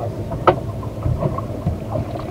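Low, steady rumble of wind and water around a small boat, with one sharp click about half a second in.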